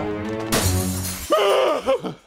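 Held music tones, then about half a second in a sudden crash of shattering glass that rings on for most of a second, as the tablet is thrown down. A short vocal sound follows near the end.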